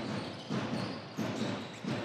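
A handball bouncing on a wooden parquet court as a player dribbles: repeated low thuds, roughly one every two-thirds of a second, over the steady noise of an indoor sports hall.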